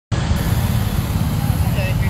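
Steady rumble of heavy traffic on a busy road, with large trucks passing close by, and faint voices in the background.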